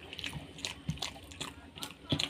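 Close-miked chewing and wet mouth sounds from eating rice and beef curry by hand, with fingers squishing and mixing the rice on the plate: a string of small irregular smacks and clicks.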